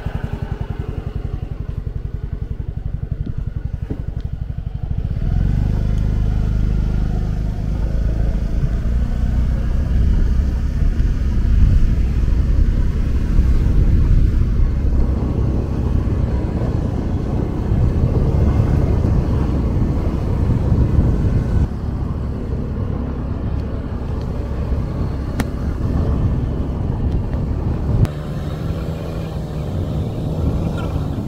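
Motor scooter engine running steadily while riding, with a low rumble that grows louder about five seconds in.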